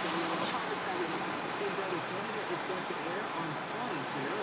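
Low, indistinct talking over the steady noise of a car's cabin while the car sits in stopped traffic, with a brief hiss just after the start.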